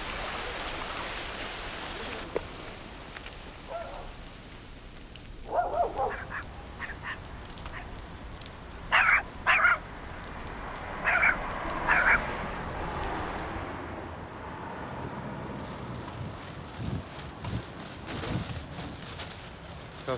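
Domestic ducks quacking: a handful of short, separate calls spread over several seconds. A steady rush of flowing water fades out in the first two seconds.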